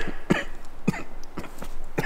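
A man with a heavy cold coughing: several short coughs spaced about half a second apart.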